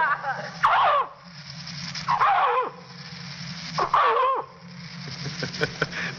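A man imitating animal cries with his voice: three wavering, pitched calls about a second and a half apart. A steady low hum and hiss from the old disc recording lie beneath.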